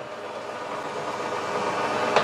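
Automatic roti-making machine running, a steady mechanical whir that grows slightly louder through the moment.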